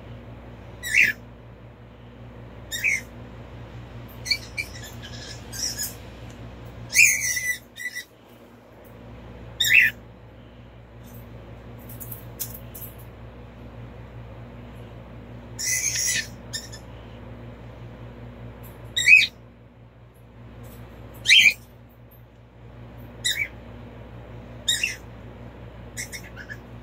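Domestic cat giving a series of short, high-pitched mews, about a dozen spaced a second or a few seconds apart, over a steady low hum.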